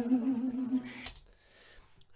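A woman's isolated singing voice from a 1953 film recording holds a note with a natural vibrato, then fades out about a second in, leaving a near-silent pause.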